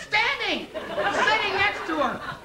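Speech only: performers' voices talking on stage, the words not made out.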